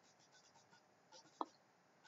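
Near silence with the faint scratch of a stylus writing on a tablet, and one short faint blip about one and a half seconds in.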